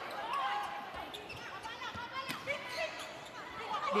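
Indoor volleyball rally: several sharp hits of the ball and short squeaks of sneakers on the court, with voices in the background.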